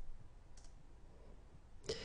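A few faint computer mouse clicks advancing presentation slides, the last and loudest near the end, over low room tone.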